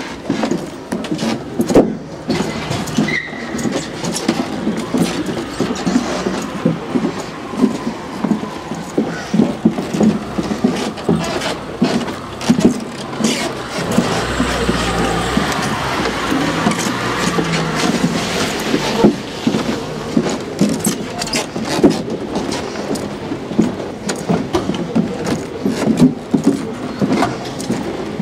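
Street traffic: cars driving by on the road, one passing close about halfway through with a deep rumble that swells and fades. Irregular knocks from the walking, handheld camera run throughout.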